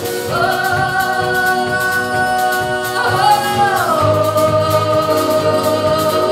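A woman singing long held notes over acoustic guitar and plucked double bass: one note held for about three seconds, then a slide down to a lower note that is held to the end.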